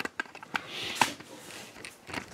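Faint handling noise as a camera is picked up and moved: a few soft, scattered clicks and knocks.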